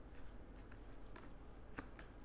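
Tarot cards being handled quietly, a card drawn from the deck and laid on the spread, with a few faint soft ticks of card on card, the clearest near the end.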